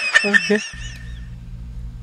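A man laughing: several quick, high-pitched bursts in the first second, then only a faint steady low hum.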